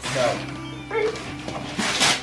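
Wrapping paper being torn off a gift box, with a loud rip near the end, over background music and brief voices.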